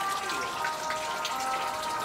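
Water splashing and pattering as a crocodile moves in a shallow pool of water, a continuous wash of small splashes with scattered drips.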